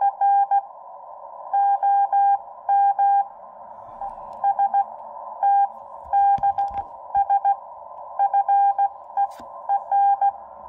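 Morse code (CW) heard through a Xiegu X6100 HF transceiver on 40 m: a tone of about 800 Hz keyed in dots and dashes at a slow hand speed, around 12 to 13 words per minute. It sits over a narrow band of filtered receiver hiss, with a couple of soft knocks about six and a half and nine seconds in.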